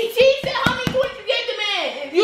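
A young person's high-pitched voice with no clear words, broken by a quick run of four or five sharp knocks about half a second in.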